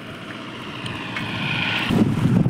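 Road traffic noise growing steadily louder as a vehicle approaches, with wind rumbling on the microphone near the end.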